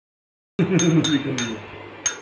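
A metal spoon clinks against a steel bowl three times in quick succession, each clink with a short high ring. A voice talks over the first second.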